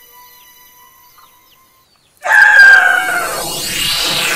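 A rooster crowing, loud and sudden about halfway through, after a quiet stretch with faint bird chirps; music swells in with it.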